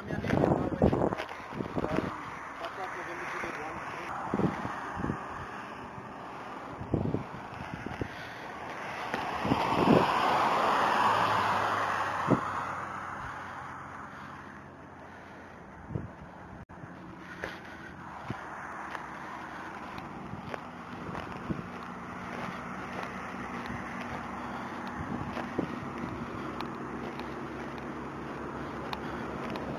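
A rush of passing highway traffic that swells and fades between about eight and fourteen seconds in, over scattered knocks and a faint steady hum.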